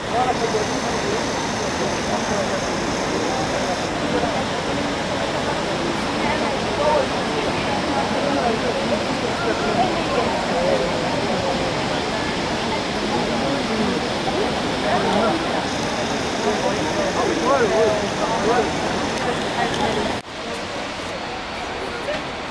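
Steady rushing roar of the Ouzoud Falls cascade, with indistinct voices of people talking through it. About two seconds before the end the sound drops abruptly to a quieter mix.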